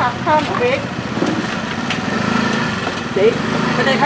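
A small engine idling, its steady low hum growing stronger about halfway through, under brief bits of talk and a few light clicks.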